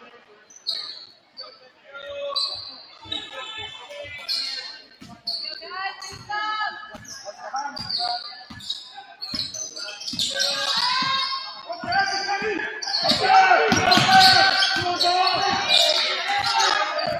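A basketball being dribbled on a hardwood gym floor, bouncing about twice a second, with short high sneaker squeaks from players moving on the court. Voices in the gym get louder in the second half, loudest near the end.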